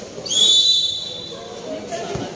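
A referee's whistle blown once, a single shrill blast of about a second, over background crowd chatter.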